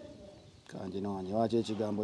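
A man's voice, drawn out and wavering, with no clear words, starting about two-thirds of a second in after a short quiet gap.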